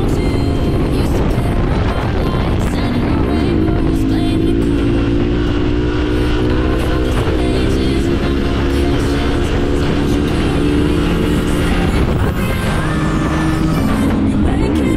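Background music mixed with a Yamaha Ténéré 700's parallel-twin engine running steadily at highway cruising speed.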